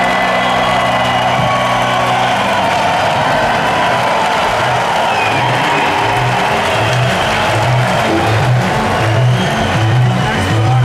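Rock band playing live with crowd noise: a held chord for the first couple of seconds, then a pulsing low bass line at about two notes a second from about halfway on.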